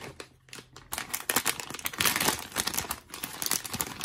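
Crinkly plastic blind bag being torn open and handled: a few light clicks, then from about a second in a dense, steady run of crackling.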